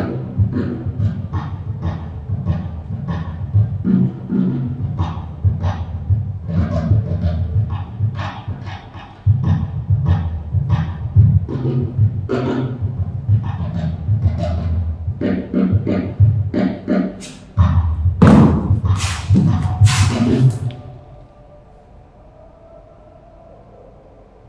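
Percussion music: sharp hand-struck strokes over a deep low beat in an uneven rhythm, with the loudest hits a few seconds before it breaks off near the end.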